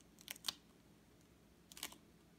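Faint clicks and scratches of a baby's fingers on a plastic high-chair tray: two or three ticks in the first half second and a short cluster near the end.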